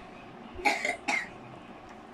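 A child coughing twice, the second cough about half a second after the first.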